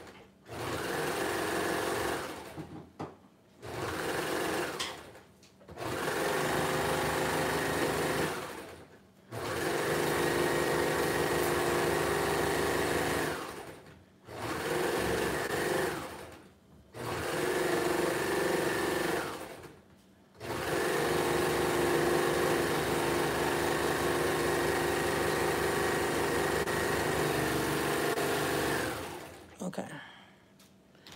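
Baby Lock Imagine serger (overlocker) stitching elastic onto the edge of a knit t-shirt. It runs in a series of stretches a few seconds long, stopping and starting about six times and slowing into each stop. The longest run, of about eight seconds, comes in the second half, and the machine stops shortly before the end.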